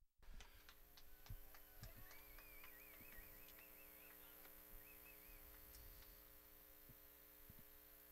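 Near silence: a faint steady electrical hum with a few faint clicks, and a faint warbling tone through the middle.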